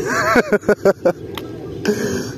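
A man's voice: a wavering, drawn-out vocal sound, then a few short, sharp bursts about half a second to a second in.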